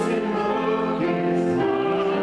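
Congregation singing a hymn together, accompanied on a grand piano.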